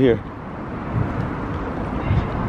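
Outdoor traffic noise: a steady hiss that grows slowly louder, with a couple of low thumps.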